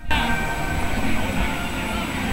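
Steady, noisy outdoor din with faint amplified music from a street performer's portable speaker mixed in.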